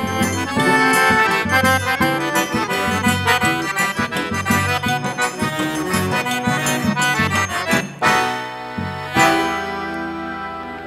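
Instrumental accordion music over a steady bass rhythm, with no singing. About eight seconds in the tune breaks off and a new held chord begins.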